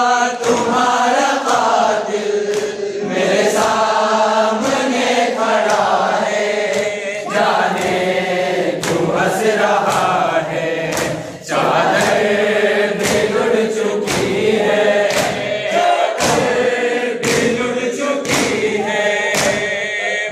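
A noha, a Shia lament, chanted in Urdu by a group of voices in chorus, with sharp beats keeping a regular pace under the singing.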